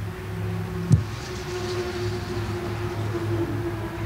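A steady low mechanical hum, with one sharp knock about a second in.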